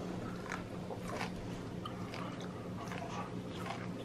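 A person biting into and chewing a cooked asparagus spear: faint, irregular crunching clicks over a steady low hum.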